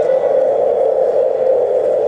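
A loud, steady droning noise with no beat or tune, from the performance soundtrack between two pieces of music.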